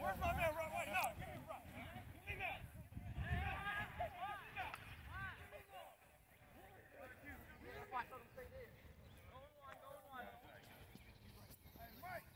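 Voices of flag football players talking and calling out across an open field, too far away for the words to be made out.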